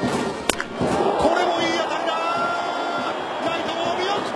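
Crack of a bat squarely hitting a pitched baseball about half a second in, followed by a ballpark crowd cheering as the ball carries out for a home run.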